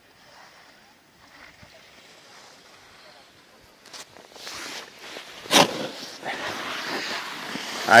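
Wind buffeting the microphone on a ski slope: faint at first, then a rushing noise that builds about halfway through, with one loud burst, and holds steady to the end.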